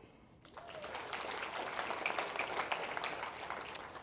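Congregation applauding in a hall, starting about half a second in and going on steadily.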